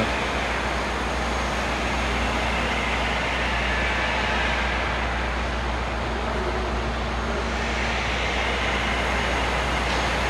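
Steady machinery noise inside a tunnel under construction: a continuous low hum under an even roar, with no change throughout.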